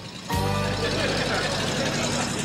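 Studio audience laughing over a short music transition.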